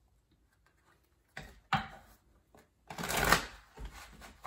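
A deck of tarot cards being shuffled by hand. There is a quiet start, then a couple of short rustles, a longer, louder shuffle about three seconds in, and a few light card clicks.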